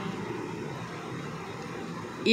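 Faint, steady background hiss and hum in a pause between spoken phrases.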